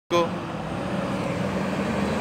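Diesel engine of an Iveco truck pulling a trailer running steadily as it approaches, with a short pitched blip at the very start.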